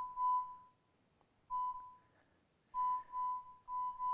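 Electronic beeps at one steady pitch from the chip-timing reading system, each confirming that a timing chip on the rack has been read as the timing loop passes over it. The beeps come irregularly: one at the start, another about halfway, then a quicker string of beeps through the last second and a half.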